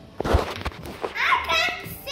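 A child's high voice, gliding in pitch, in the second half, after a few sharp knocks in the first half, the loudest about a third of a second in.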